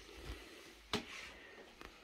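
Clip latch of a clear plastic storage box snapping shut over the lid: one sharp click about a second in, then a couple of faint ticks near the end.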